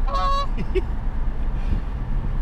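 A Canada goose honks once, a short call at the start, over the steady low road rumble of a car cabin.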